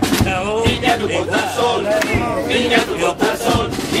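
A chirigota group of men singing and shouting together to acoustic guitar, with hand claps.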